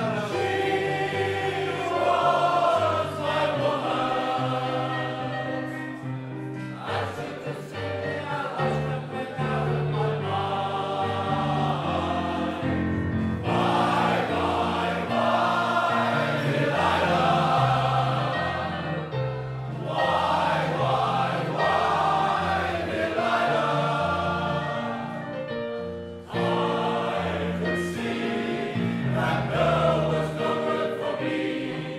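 Male voice choir singing in harmony, the phrases broken by short pauses for breath about every six seconds.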